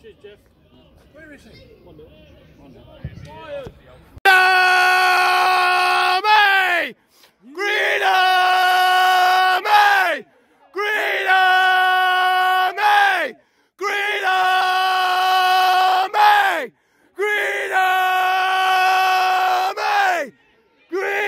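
A person's voice giving five loud, long held shouts from about four seconds in. Each is about two and a half seconds on one steady pitch and trails down in pitch at the end, with short breaks between.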